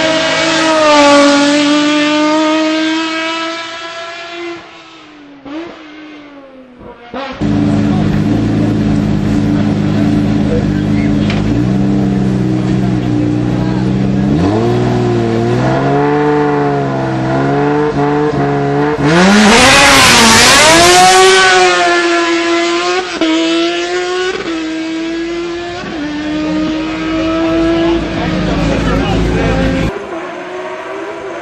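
A racing sports prototype's engine at high revs passes with its pitch falling and fades away. Then the engine idles steadily, is blipped several times, and is revved hard about two-thirds of the way in as the car launches and pulls away through the gears.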